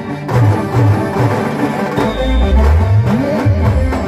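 Timli dance music played live by a band through a large loudspeaker stack, with heavy pulsing bass; a long deep bass note comes in about halfway through.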